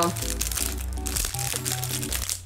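Clear plastic packaging crinkling as it is handled and tugged at to get it open, over steady background music.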